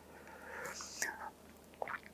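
A man's soft breath in a pause between sentences, a faint hiss for about the first second, followed by a couple of faint clicks.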